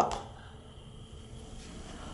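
Quiet room tone inside a stopped elevator cab with its doors open: a faint steady hum, with no distinct mechanical events.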